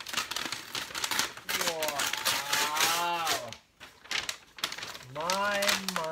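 Thick paper wrapping crinkling and tearing as it is pulled and torn away from a large box, with two long drawn-out groans from the man straining at it, one in the middle and one starting near the end.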